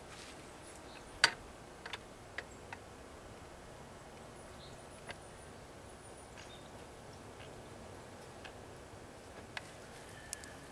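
A few sparse, sharp clicks and taps of metal, the loudest about a second in, as a buckshot mold is handled and the freshly cast lead balls are knocked out of it onto a metal plate.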